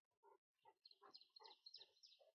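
Near silence in woodland, with a faint bird singing a quick run of short, high chirps from about a second in.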